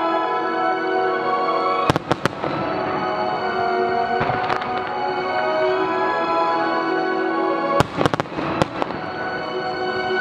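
Aerial firework shells bursting with sharp bangs over steady music: a few bangs about two seconds in and a quick cluster around eight seconds.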